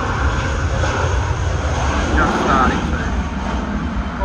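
Jet engines of an Airbus A320-family airliner at takeoff power during the takeoff roll, a steady, loud rumble and roar. A few brief falling voice-like sounds are heard about two seconds in.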